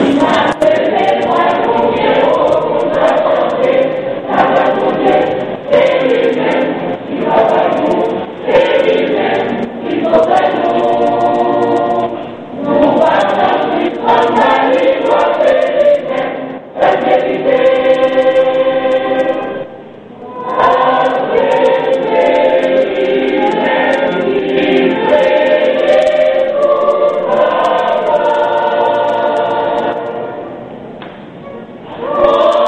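A church choir singing a gospel hymn, with brief pauses between phrases about two-thirds of the way through.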